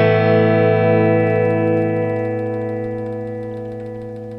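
An electric guitar chord, strummed once through a Boss ME-70 multi-effects pedalboard, rings on and slowly fades; some of the lower notes die away about two seconds in.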